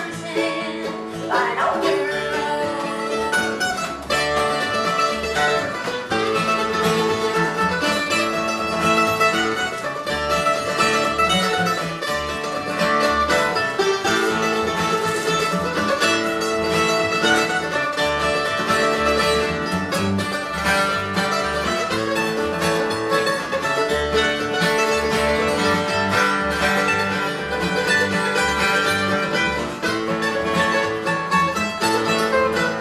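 Acoustic bluegrass band playing an instrumental break: a mandolin picks a fast lead over acoustic guitar rhythm and upright bass.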